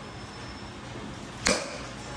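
A baseball bat hitting a pitched ball: one sharp crack about one and a half seconds in, with a short ring after it.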